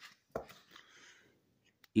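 One short knock, then faint handling and rustling, and a small click near the end, as tools are picked up and set down on a concrete floor.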